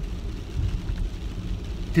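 Steady low road and tyre rumble heard inside the cabin of a moving car.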